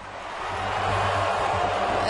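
Large arena audience booing, the noise swelling over the two seconds, with a low steady hum underneath.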